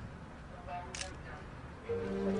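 A single sharp camera shutter click about a second in, from press photographers shooting a crime scene, over quiet background noise.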